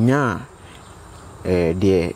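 A man speaking, broken by a pause of about a second. Through the pause a faint, steady, high-pitched trill of insects carries on under the voice.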